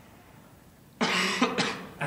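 A man coughs about a second in: a sudden, short burst with a second, smaller catch just after.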